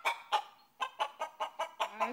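A chicken clucking: a run of short, sharp clucks that come faster in the second half.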